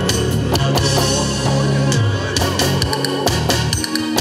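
Band playing an instrumental passage of a Korean trot song, with drum kit, bass guitar and guitar in a steady beat.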